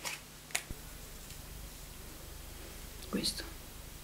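Mostly quiet room tone with one small click about half a second in as a lipstick is handled, and a short breathy vocal sound, like a whisper, about three seconds in.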